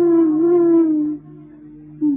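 Vintage Hindi film song: a long held melody note, slightly wavering and sinking in pitch, drops away about a second in, leaving a quieter steady drone underneath.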